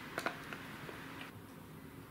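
A few short, faint clicks and taps in the first second over quiet room hiss, which drops suddenly about two thirds of the way through.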